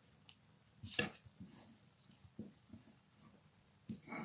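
Graphite pencil scratching faintly on gold metallized card, tracing around the edge of a paper template in short strokes, with one louder stroke about a second in.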